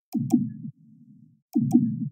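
Electronic sound: a pair of sharp clicks with a low buzzing tone, heard twice, about a second and a half apart.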